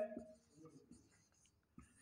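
Marker pen writing on a whiteboard: faint, short scratching strokes.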